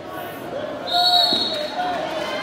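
Referee's whistle blown once about a second in, a shrill steady blast lasting about half a second, over voices in a gym.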